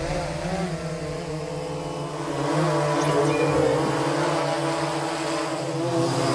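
Quadcopter drone's propellers and motors giving a steady multi-tone hum as it lifts off and hovers, the pitch wavering slightly, growing a little louder about halfway through.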